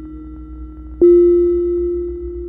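Ambient electronic drone music: held synthesizer notes over a low hum, with a loud new note struck about a second in that slowly fades.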